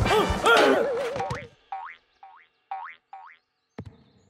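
Cartoon score and comedy sound effects. Bouncy, boing-like arched notes lead into a wobbling tone, followed by four short rising pitch glides spaced about half a second apart. A single sharp click comes near the end.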